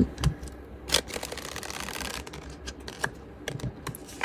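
Tarot cards being shuffled by hand: a dense run of flicking card edges about a second in, then scattered light clicks and taps of the cards.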